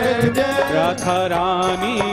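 Devotional bhajan music: a harmonium carries the melody over repeated hand-drum strikes.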